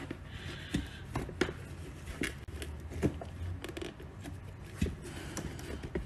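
Handling noise from a sneaker being turned over in its cardboard box: scattered light taps and clicks with faint rustling.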